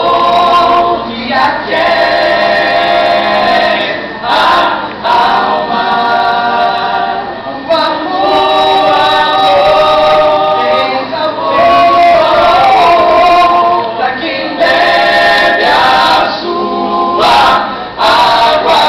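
Vocal jazz ensemble singing a cappella, several voices moving together in close harmony. The sung phrases break off briefly every few seconds.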